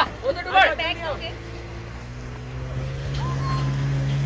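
Motorboat engine running steadily, with a low hum that gets louder and slightly higher about three seconds in. A person's voice calls out in the first second.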